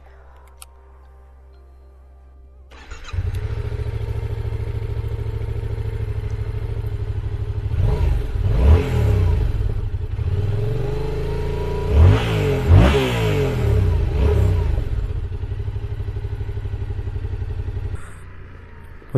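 Yamaha XSR700's 689 cc CP2 parallel-twin engine starting about three seconds in and idling, then revved in short blips a few times before settling back to a steady idle.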